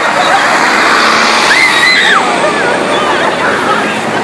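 A classic Ford Thunderbird pulling away, heard as a loud rush of noise that swells in the first half, mixed with people's voices and one high rising-and-falling call about a second and a half in.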